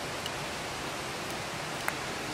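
A steady, even hiss of background noise, with one faint click near the end.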